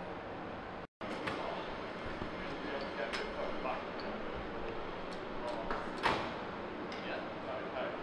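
Indistinct voices over a steady street background noise, with a brief silent gap just before one second in and scattered sharp clicks and knocks after it, the loudest about six seconds in.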